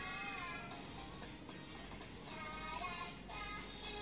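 Children's cartoon music with high, short sung phrases, playing faintly from a tablet's speaker.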